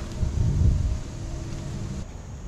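Wind buffeting the microphone: a low rumble that swells for about a second, then eases.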